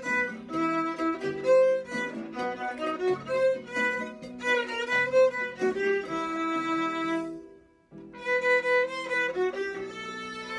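Solo violin playing a melody with the bow, note after note, breaking off briefly a little past seven seconds in and starting again about a second later.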